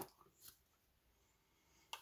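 Near silence: room tone, with a faint short click about half a second in and another near the end.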